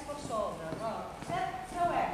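A woman's voice talking in a large hall, with a few hard heel knocks from cowboy boots stepping on the stage floor.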